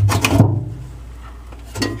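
A few quick clicks and knocks in the first half second, then a low steady hum.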